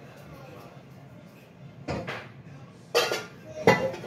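Cooking pots clattering and a cupboard knocking as a pot is taken out: three sharp knocks in the second half, some with a brief metallic ring.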